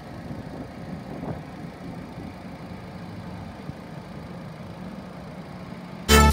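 2015 Chevrolet Spark's S-TEC II 16-valve four-cylinder engine idling steadily, heard close up in the open engine bay.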